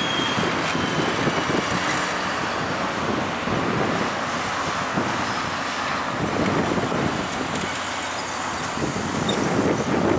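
Street traffic: cars and a city bus passing, a steady wash of road noise with small swells.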